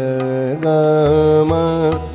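Male Hindustani classical vocalist singing an alaap in Raag Ahir Bhairav, holding one long note and stepping up to another held note about half a second in, over a steady low accompaniment.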